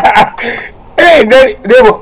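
A man laughing: a breathy exhale, then two short voiced bursts of laughter.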